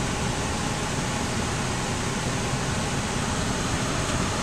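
Hyundai Sonata's air-conditioning blower running on maximum inside the cabin: a steady hiss of air at a constant level.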